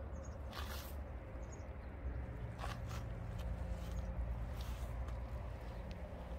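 A few soft scuffs, like footsteps on dry soil, about a second apart at first and then more spaced out, over a steady low rumble on the phone microphone.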